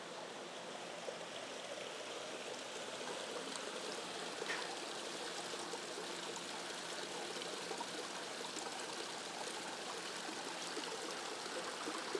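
Small stream of water running over rocks among ferns: a steady trickling flow that grows a little louder over the first few seconds.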